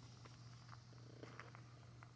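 Near silence: a pause with only a faint steady low hum and a few faint ticks.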